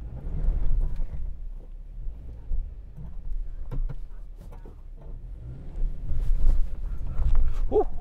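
A 2021 Subaru Crosstrek Sport's 2.5-litre flat-four engine working under load as the car crawls up a loose rock trail, revs swelling near the start and again toward the end, with tyres scrabbling and a few sharp knocks of rock underneath.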